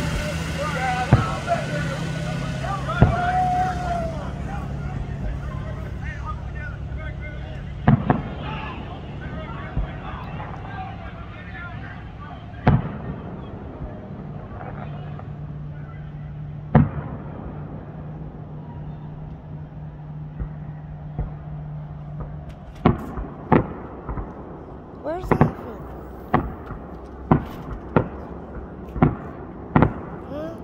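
Aerial fireworks going off: single bangs every few seconds at first, then a rapid string of bangs in the last seven seconds.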